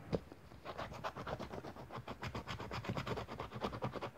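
The scratch-off coating of a paper lottery scratch card being scratched away in rapid, short, repeated strokes, getting going about half a second in.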